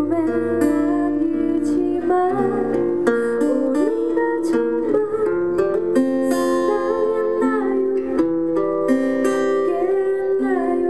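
A woman singing a sad ballad into a microphone, accompanied by a strummed acoustic guitar.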